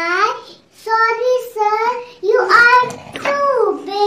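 A young girl's voice delivering a line of a story, with wide rises and falls in pitch across several short phrases.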